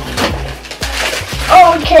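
Plastic wrapping and cardboard packaging rustling, with a few short knocks, as a plastic-wrapped toy pottery wheel is lifted out of its box.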